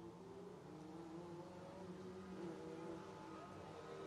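Faint race car engine running on the dirt track, its note wavering a little with the throttle and slowly growing louder.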